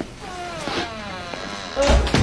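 A wavering, pitched sound whose tones glide downward, then a door slams shut hard near the end, the loudest sound here.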